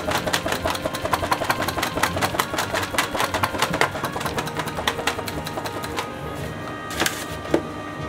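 A thin, crisp-baked crepe crackling and crunching under a palm as it is pressed flat on a stainless wire cooling rack, in quick irregular crackles that thin out about six seconds in, with a couple of sharper cracks near the end. Background music plays underneath.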